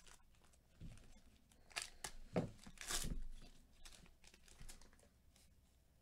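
Glossy trading cards being slid and shuffled by gloved hands, making a few short, crisp rustles, the loudest about three seconds in.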